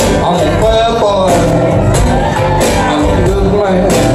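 Live band playing a song at full volume, with drums, guitar and keyboard together.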